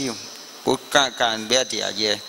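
A man speaking into a microphone, a few short phrases after a brief pause, over a steady thin high whine.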